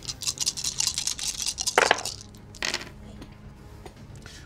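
Dice rolled onto a tabletop: a quick rattling clatter of many small clicks over the first second and a half, followed by two louder single knocks as the last dice settle.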